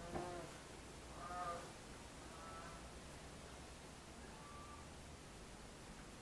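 A few faint, short pitched animal calls over quiet room tone. The clearest come right at the start and about a second and a half in, with two fainter ones later.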